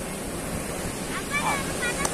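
Sea surf breaking and washing up the sand, with wind on the microphone. In the second half, high-pitched children's voices call out a few times over it.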